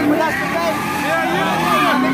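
People's voices close to the microphone over crowd chatter, with a car engine running and revving underneath.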